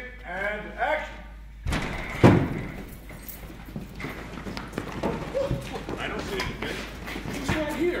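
Voices at first, then a single loud thud about two seconds in, followed by a group of people walking and shuffling on a hard floor in a large, echoing hall, with scattered voices.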